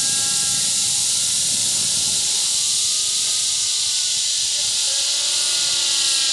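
Nitro-engined Align T-Rex 600 RC helicopter in flight overhead: a steady high engine and rotor note over a strong hiss. Its pitch shifts a little as it manoeuvres, with a brief sweep about five seconds in.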